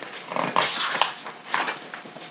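Paper rustling as a picture book's page is turned over and flattened: a couple of seconds of crinkly handling noise.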